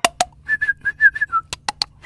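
A person whistling a quick run of about seven short notes at nearly the same pitch, the last one dipping lower. A few sharp clicks come at the start and again about a second and a half in.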